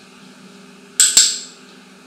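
A bird-training clicker clicking twice in quick succession about a second in, a sharp press-and-release. It marks the macaw's correct response, spreading its wings on cue, just before the treat is given.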